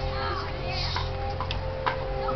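Crowd chatter in the stands under a steady tone held at a few fixed pitches, with a few scattered sharp clicks.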